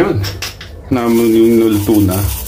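A voice singing, breaking off and then holding one long steady note from about halfway in.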